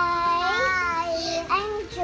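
Children's voices in a drawn-out, sing-song call, the held notes bending up and down, with a short rising call about one and a half seconds in.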